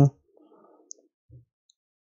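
The tail of a spoken word, then near silence broken by one faint, sharp click about a second in.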